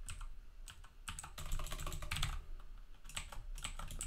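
Typing on a computer keyboard: runs of key clicks in short bursts with brief pauses, as a line of code is entered.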